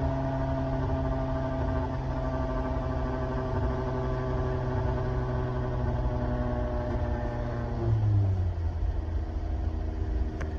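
Engine and road noise heard inside the cabin of a 1990 Nissan Pulsar GTi-R, its turbocharged 2.0-litre four-cylinder holding a steady note at highway speed. About eight seconds in, the engine pitch drops to a lower steady note.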